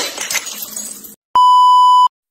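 About a second of noisy clip audio cuts off abruptly, then a loud, steady 1 kHz test-tone beep sounds for under a second: the standard tone played with television colour bars.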